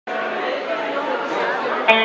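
Many people chattering in a large hall. Just before the end, a sharp click and then an electric guitar chord rings out as the band starts to play.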